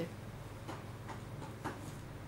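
Quiet room tone with a steady low hum and a few faint short clicks.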